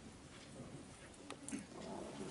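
Faint room tone in a meeting hall, with a low murmur and two small clicks about a second and a half in.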